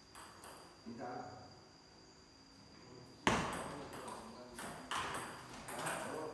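Table tennis rally: the ball clicks sharply off paddles and table. A loud sharp hit comes a little after halfway, followed by a quick run of further clicks, with voices in the background.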